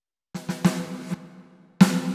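Drum hits from a Roland TD-17 electronic drum module, played through its reverse delay multi-effect: a few strikes with a ringing tone and a smeared tail, then a loud strike near the end.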